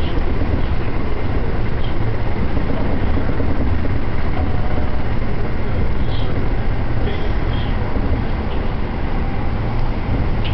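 Steady low rumble of a moving train heard from inside the carriage, running at constant speed.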